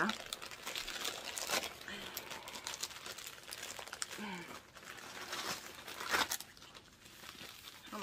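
Package wrapping being opened by hand: irregular crinkling and rustling with some tearing of the wrapping, which is doubled.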